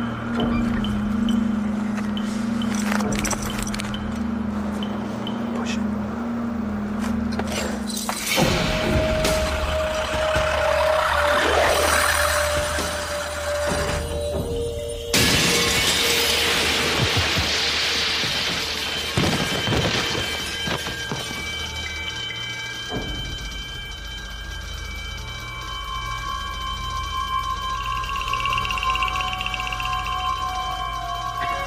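Dramatic background music. About halfway through, a pane of glass shatters with a loud crash, and falling glass keeps crashing for a few seconds.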